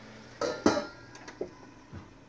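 Stainless steel lid set onto a frying pan: two metal clinks about a quarter second apart with a short ring, followed by a few lighter taps.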